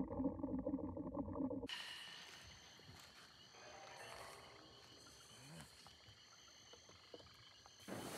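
A low, rough, muffled animal growl in the manner of a menacing alligator sound effect, which cuts off about a second and a half in. Faint swamp ambience with light rustling of water plants follows.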